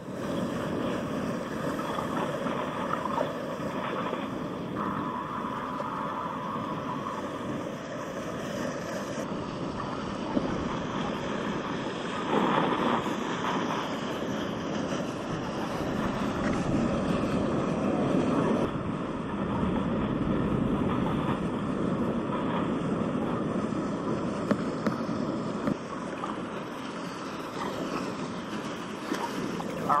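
Steady wind rushing over the microphone, mixed with the wash of water, louder for a moment about twelve seconds in.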